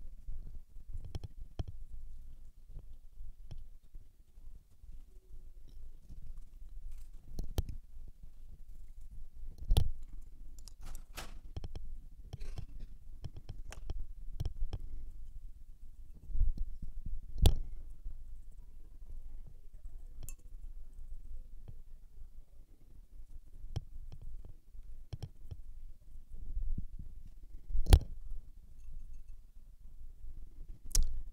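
Scattered light clicks and knocks from painting tools being handled and set down, the sharpest about ten seconds in, a third of the way through and near the end, over faint room tone.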